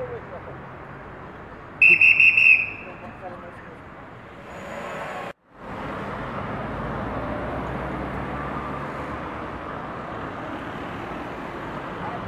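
A police whistle blown in one short, shrill, trilling blast about two seconds in, over steady street noise.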